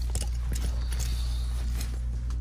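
Clothes hangers clicking and sliding along a metal clothing rack as garments are pushed aside one after another: a few sharp, irregular clicks over a steady low hum.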